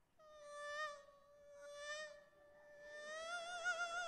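A man imitating a mosquito's whine with his voice, the mosquito 'singing': one long held buzzing note that swells and dips in loudness, then rises a little and wavers in a trembling vibrato near the end.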